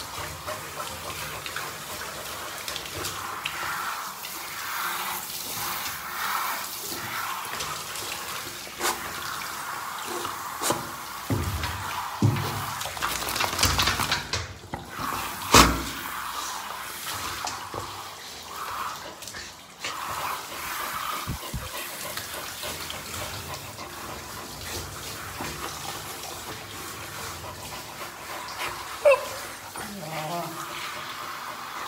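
Water running from a handheld shower head onto a dog's wet coat in a bathtub, a steady hiss. A few sharp knocks break in, the loudest about halfway through and another just before the end.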